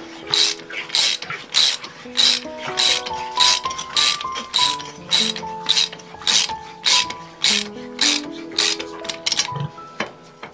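Hand ratchet wrench tightening a bolt, clicking in quick back-and-forth strokes about two or three a second, stopping shortly before the end as the bolt is seated. Background music with a melody plays alongside.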